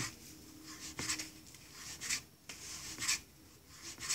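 Hands rolling and rubbing thin strips of rice-flour dough on a floured surface, a soft rasping rub repeated in strokes about once a second.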